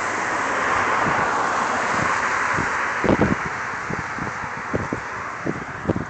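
Tyre and road noise of a car passing on a snowy road, fading away over the first three seconds. After it come soft, irregular low thumps.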